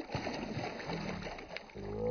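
A released carp kicking away at the surface: a sudden splash that throws up spray, then churning, splashing water. A short voice, like a laugh, comes in near the end.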